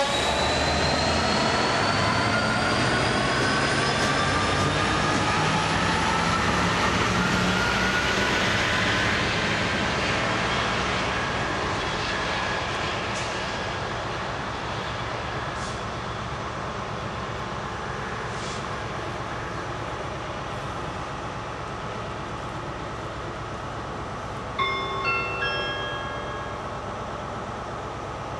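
Class 66 diesel locomotive's EMD two-stroke V12 engine powering away as a light engine, its pitch rising slowly over the first ten seconds, then fading steadily as it draws off down the line. Near the end a short chime of several notes sounds.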